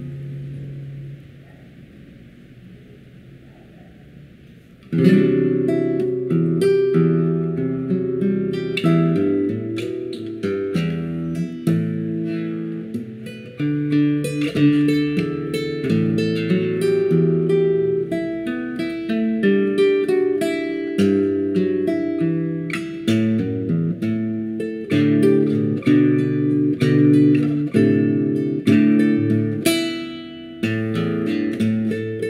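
One piece of music dies away about a second in, then after a soft lull an acoustic guitar starts playing a new song about five seconds in, with a steady stream of plucked notes.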